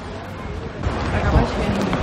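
People's voices talking, with wind rumbling on the phone's microphone that grows louder about a second in.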